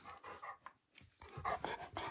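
A dog panting softly close to the microphone in short, irregular breaths, pausing for about half a second midway.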